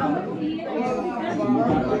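Several people talking at once, their voices overlapping in a steady group chatter.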